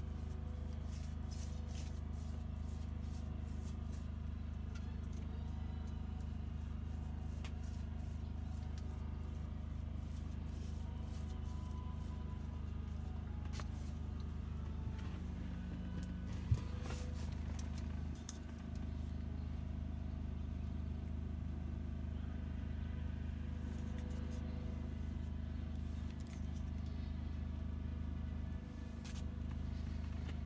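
A steady low mechanical hum, with faint scattered clicks and one sharp knock about halfway through.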